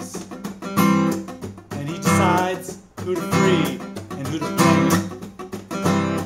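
Steel-string acoustic guitar strummed in a steady rhythm, with a man singing a line over it.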